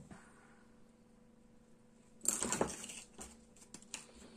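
Quiet room tone, then a little past halfway a second-long burst of small hard objects clattering and rustling as they are handled on a tabletop, followed by a few light clicks.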